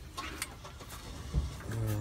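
Hands working a rubber lower radiator hose onto a new radiator's outlet: a brief sharp click about half a second in and a dull knock a little later.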